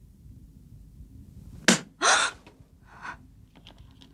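A person's startled vocal outburst: a sharp gasp just under two seconds in, followed at once by a louder breathy cry, then a softer breath about a second later.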